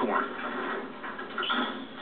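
Mechanical noise from an old broomcorn baler-thresher being worked by hand, heard through a television speaker in a room.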